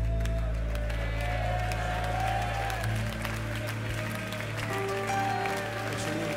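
The last held chord of a live worship band fading out on keyboard and bass, the low bass note dropping away a little over halfway through, with the congregation applauding and scattered voices over it.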